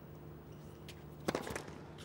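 Faint tennis-arena ambience with a steady low hum, and a short cluster of sharp knocks about a second and a half in.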